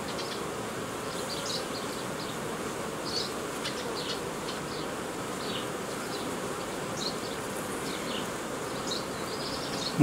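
Honeybees buzzing steadily around an open hive, a continuous hum with short high-pitched sounds now and then.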